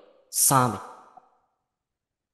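A teacher's voice making one short sighing sound about a third of a second in: it starts with a breathy hiss and trails off within about a second.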